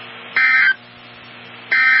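NOAA Weather Radio SAME end-of-message data bursts: two short, harsh two-tone digital bursts about 1.4 s apart over a low steady hum, marking the end of the warning broadcast.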